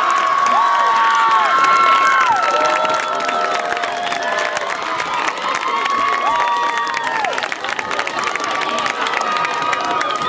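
A crowd cheering and clapping, with many high-pitched screams and whoops each held for a second or so.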